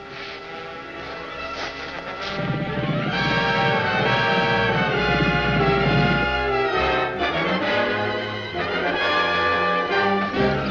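Orchestral film score led by brass, building and growing louder about three seconds in.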